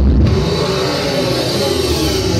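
Loud live music from a concert sound system, heard from within the crowd: low sustained notes that shift in pitch under a steady hiss.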